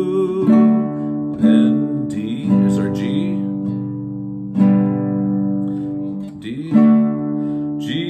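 Nylon-string classical guitar strumming open chords in the key of D, moving between D and G. About five chords are struck and left to ring, with a man's singing voice coming in briefly in places.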